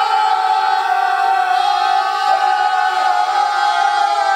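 Five men holding one long, loud open-mouthed cry together on a steady pitch.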